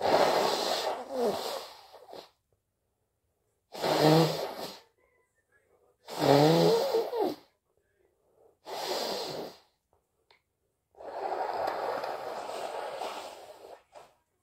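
A person blowing a congested, runny nose hard, five times over, each blow a second or two long with a short honking note in some, the last a longer blow of about three seconds.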